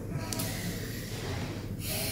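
Soft breath noise from a person over a faint steady low hum.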